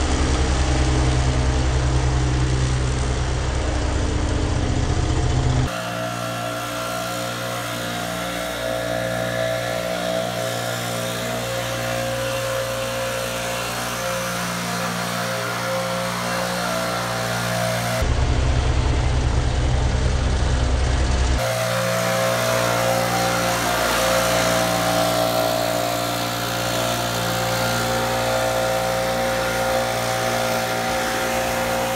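An Exmark stand-on mower's engine runs steadily and deeply. About six seconds in, a cut switches to a gas backpack leaf blower running at a steady, higher pitch. The mower returns for about three seconds around eighteen seconds in, then the blower runs again.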